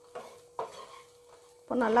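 Wooden spatula stirring and scraping cooked rice and vegetables around a non-stick pan, two short scrapes in the first second, mixing the rice through. A faint steady hum runs underneath.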